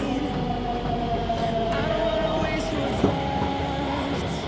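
Delhi Metro Pink Line train pulling into the platform, with a whine that slowly falls in pitch as it slows. A sharp click sounds about three seconds in.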